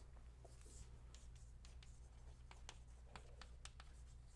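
Faint chalk writing on a blackboard: a string of short taps and scrapes as letters are chalked, over a steady low hum.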